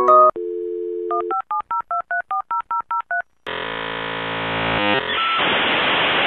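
Dial-up modem connecting over a telephone line: a steady dial tone, then about ten quick touch-tone beeps dialing a number, then the harsh screeching handshake and a loud steady hiss.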